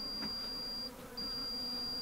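Two long, high electronic beeps, each about a second with a short gap between, from a RanchBot solar-powered satellite water-level sensor, signalling that the unit has powered up and is working. A faint steady buzz runs underneath.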